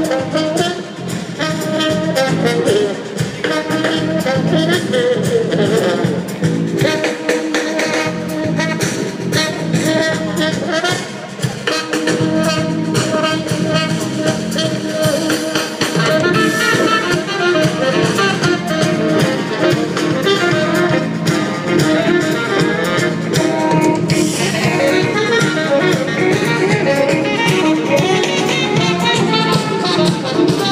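Small jazz ensemble playing live, with a horn front line over a rhythm section.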